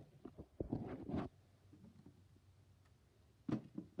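Faint clicks and knocks of objects being handled: a short cluster about a second in, then near-quiet, then two more light clicks near the end.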